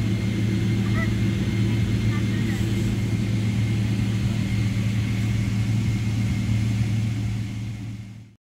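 Steady low hum inside the cabin of a Boeing 777-300ER taxiing on its engines at idle, with a thin steady high whine above it. The sound fades out near the end.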